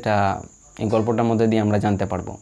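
A man's voice speaking, with a long sound held on one low, level pitch in the second half, over a faint steady high-pitched whine.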